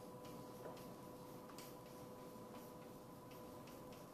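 Chalk writing on a blackboard: a quiet, irregular run of taps and scratches as each letter is stroked out.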